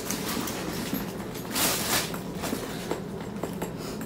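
Plastic wrapping being pulled off a leather handbag's handle, rustling and crinkling, with a louder burst about a second and a half in.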